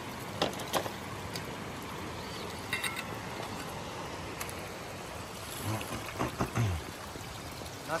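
Steady rush of a nearby mountain stream, with a few footsteps on dry leaves and stones. Brief low murmurs of a man's voice come in past the middle.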